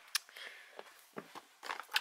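Makeup palettes and compacts being shifted about in a drawer: a few faint clicks and knocks.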